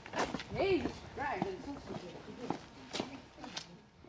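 Footsteps of several people walking on a paved street, a step about every half second, with faint indistinct talk over them in the first second and a half.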